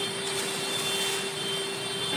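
A steady mechanical hum, a constant pitched drone with a faint high whine over a hiss.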